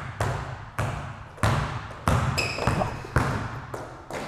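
A basketball being dribbled hard on a court floor, about six bounces spaced a little over half a second apart. A brief high squeak comes about halfway through.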